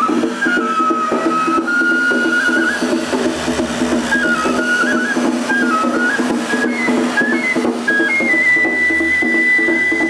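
Festival hayashi music played live from the float: a Japanese bamboo flute (fue) plays a melody that steps up and down, ending on a long held high note, over a steady rhythmic accompaniment.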